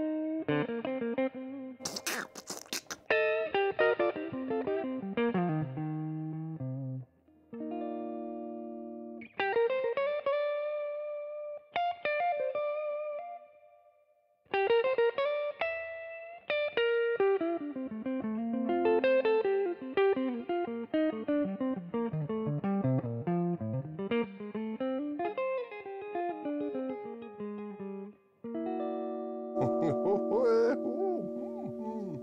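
Gibson Memphis ES-335 semi-hollow electric guitar played through an amplifier on its neck pickup alone: single-note runs and ringing chords, with a burst of scratchy muted strums about two seconds in and brief pauses around seven and fourteen seconds.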